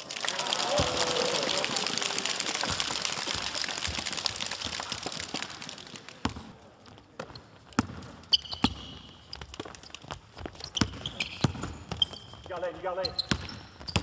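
Spectators cheering for about the first six seconds, then a basketball being dribbled on a hardwood court: scattered bounces with sharp sneaker squeaks.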